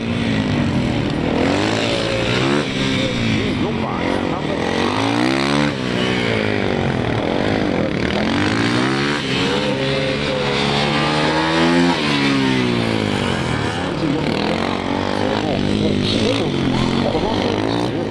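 Yamaha WR450F's 450 cc single-cylinder four-stroke engine revving up and down over and over as the motorcycle accelerates and brakes through tight turns. The pitch rises and falls every second or two.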